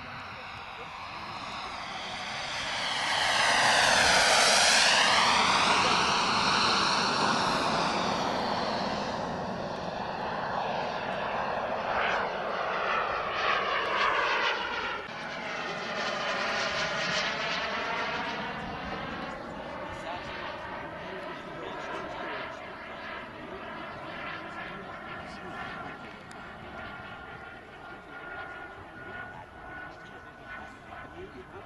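Turbine-powered CARF Tutor model jet making low passes: its whine swells to loudest about four seconds in, with sweeping whooshing tones as it goes by. A second pass comes around the middle, then it settles into a steadier, fainter whine at a distance.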